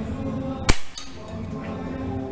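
A single shot from a SAG R1000 5.5 mm gas-ram air rifle: one sharp crack about two-thirds of a second in, followed by a fainter crack about a quarter second later. Background music plays throughout.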